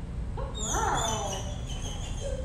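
Pit bull–type dog whining once, a short pitched cry that rises and falls about half a second in.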